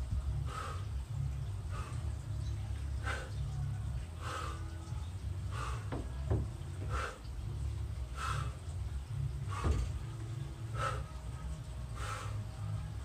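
Short, sharp exhalations, about one every second and a quarter, from a man swinging a steel clubbell through repeated lever snatches, over a low steady rumble.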